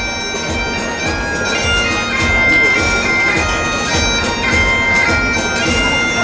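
Bagpipe music: a piped melody moving over steady held drones.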